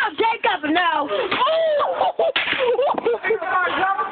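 Several people yelling and laughing over pop bottle rockets going off, with sharp cracks among the voices and one louder bang a little past the middle.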